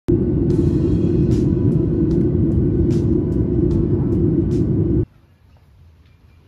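Airliner cabin noise in flight: the loud, steady, deep rumble of jet engines and airflow heard from inside the cabin at a window seat over the wing, cutting off abruptly about five seconds in.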